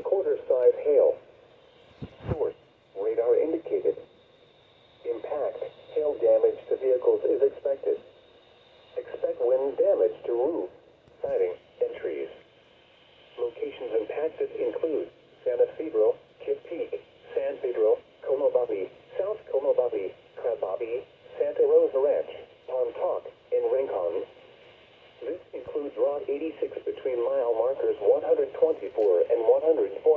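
NOAA Weather Radio's automated voice reading out a severe thunderstorm warning through the small speaker of a Midland weather alert radio, with a narrow, tinny sound. A brief low thump about two seconds in.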